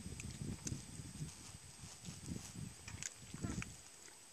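Wet mud squelching and sloshing in uneven bursts as a child shifts about, waist-deep in a flooded rice paddy.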